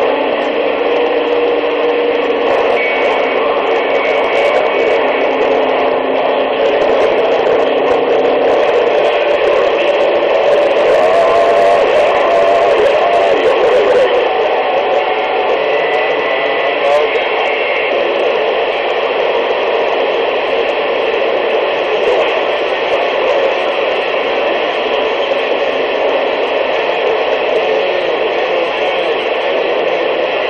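CB radio receiver tuned to 27.185 MHz (channel 19) playing through its speaker: steady static with faint, garbled voices of other stations and brief whistling tones breaking through.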